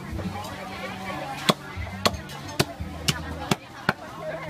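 Cleaver chopping through raw meat and bone on a wooden chopping block: about six sharp chops, roughly two a second, starting about a third of the way in.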